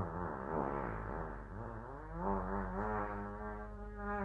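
A long, drawn-out fart sound effect: a buzzy tone whose pitch wobbles up and down, swelling a little after two seconds in.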